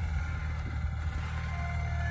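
Garden tractor engine running at a steady speed, a low even hum, while it pulls a disc harrow through the garden soil.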